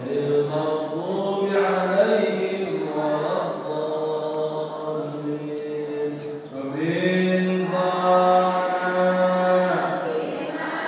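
A man chanting in a slow melody, holding long notes with slow turns in pitch. After a short break about six and a half seconds in, he holds one long note almost to the end.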